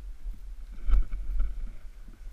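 Low rumble of wind buffeting a helmet-mounted action camera's microphone as a mountain bike rolls down a rough dirt trail, with a sharp knock about a second in as the bike jolts over the ground.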